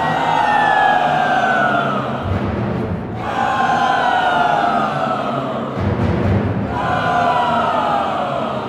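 Mixed choir singing three long, downward-sliding wails over a string orchestra, with low drum rumbles between them.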